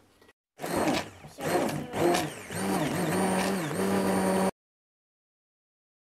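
Handheld immersion blender running in a stainless steel pot, puréeing blueberries in bone broth, its motor pitch wavering up and down. It starts about half a second in and stops abruptly about four and a half seconds in.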